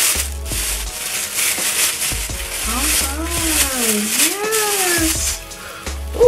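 Thin plastic bag crinkling and rustling as it is pulled off a silicone practice hand.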